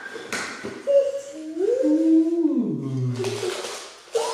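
A drawn-out wordless vocal 'ooh', rising in pitch and then sliding down low, with a couple of light knocks from a cardboard shoebox being handled.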